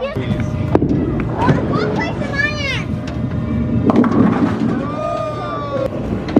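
Bowling alley noise: a steady low rumble of bowling balls rolling down the lanes, with a few sharp knocks and excited high voices calling out over it.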